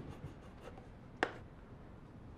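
Coloured pencils being handled at a wooden drawing easel: faint scratching and a few light clicks, the sharpest just over a second in.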